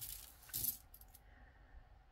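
Glass beads of a heavy black bead necklace clinking together as it is handled and set down: a short rattle at the start and a louder one about half a second in, then a few faint clicks.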